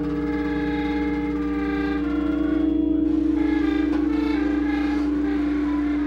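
Live free-improvised music: layered droning tones from the band, with one strong steady note held underneath while higher sustained pitches shift and overlap, and no drum hits.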